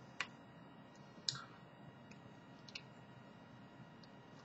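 A few faint clicks from small e-cigarette parts being handled, a cartomizer being fitted onto a 510 battery: two sharper clicks in the first second and a half, then two fainter ticks.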